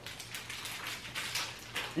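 Faint crinkling and light crackles of a thin plastic packet being handled.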